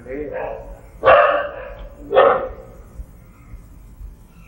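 A dog barking twice, about a second apart, behind a man's speech.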